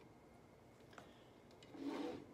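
Faint handling noise of a small ornament being picked up and shifted on a wooden hutch shelf, with one light click about a second in.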